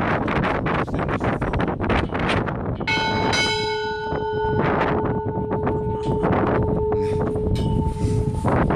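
Ship's bell struck twice in quick succession about three seconds in, then ringing on with a long, steady, slowly fading tone, with wind buffeting the microphone.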